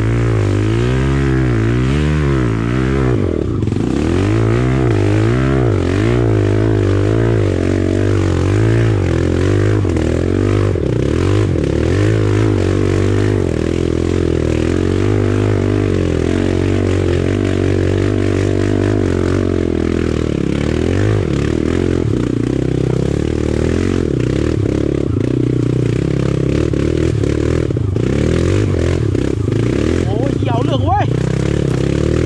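Dirt bike engine revving hard under load on a steep, muddy trail climb, its pitch rising and falling over and over in the first ten seconds or so as the throttle is worked, then running more steadily.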